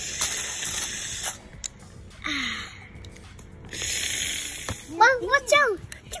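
Two bursts of high hiss of about a second each, then a young child's high voice rising and falling in a few quick calls near the end.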